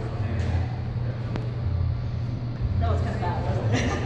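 Voices talking in a large room over a steady low rumble, with speech clearest near the end and a single sharp click about a second and a half in.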